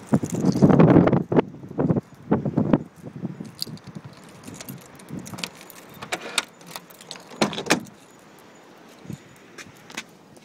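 Keys jangling, then a run of sharp clicks and clacks from the 1997 BMW 328is's door lock and door handle as the door is worked. The loudest jangling comes in the first three seconds and the strongest clicks about five to eight seconds in.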